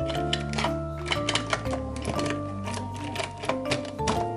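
Background music with a steady bass line and changing notes, over many light clicks and clatters of plastic markers and highlighters being handled and dropped into clear plastic pen cups.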